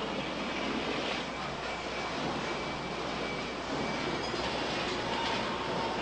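Steady factory-floor machinery noise: a continuous even hiss and rumble with a faint hum, and no distinct strikes.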